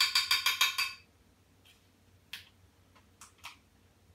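A rapid, even run of about eight bright ringing clinks lasting about a second, followed by a few faint, short clicks.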